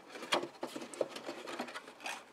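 Black cardstock rustling, rubbing and crackling in the hands as the folded sides and lip of a paper box base are pushed in to a snug fit, a run of small taps and scrapes.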